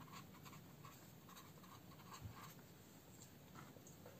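Faint scratching of a felt-tip pen writing letters on paper, a quick run of short strokes.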